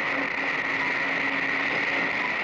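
Audience applauding: dense, steady clapping from a full hall, with a faint held low note underneath.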